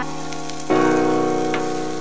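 Sausages, onions and patties sizzling on a barbecue hotplate, under steady background keyboard music; a new chord comes in a little under a second in.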